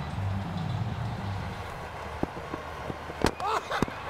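A cricket ball hitting the stumps with a sharp crack about three seconds in, as the batsman is bowled, with a second smaller crack a moment later. Fielders shout in celebration over the faint ambient noise of the ground.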